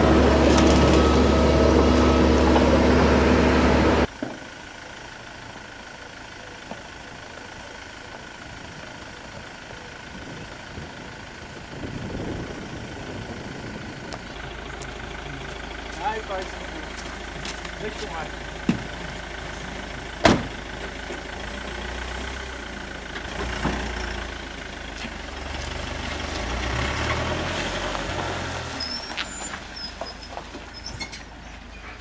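Volvo truck's diesel engine running loud and steady, cut off abruptly about four seconds in. It gives way to much quieter outdoor sound with a few sharp knocks.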